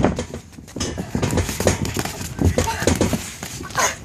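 Irregular thuds and scuffs of two children sparring in boxing gloves: punches landing and sneakers shuffling on the ring canvas.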